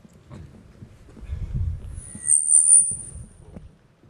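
Handheld microphone being handled as it is passed to an audience member and switched on: low bumps and rumble, then a loud, brief high-pitched whistle lasting about a second.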